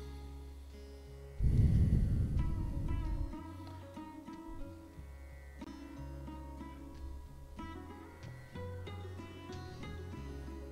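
Calm background music: plucked string notes over a low sustained drone, with a louder deep swell for about two seconds starting a second and a half in.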